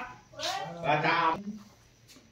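A person's voice in two drawn-out vocal sounds with wavering pitch, not made out as words: one trailing off at the start, and a second about half a second in that lasts about a second.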